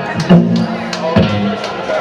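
Live rock band playing loosely on stage: sustained electric bass notes and a few drum hits, with crowd chatter underneath.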